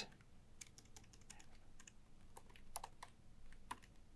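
Faint computer keyboard typing: scattered, irregular key clicks as a line of code is typed.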